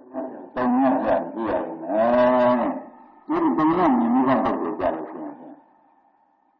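A monk's voice preaching in Burmese in three phrases, with long drawn-out, chant-like vowels, fading off near the end. It is an old 1960 sermon recording.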